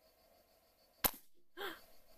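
A single shot from a scoped air rifle about a second in, one sharp report, followed about half a second later by a shorter, fainter sound.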